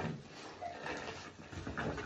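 Soaked foam sponge squeezed by hand over a tub of soapy water: wet squelching, with water streaming and splashing into the bath, in a few bursts.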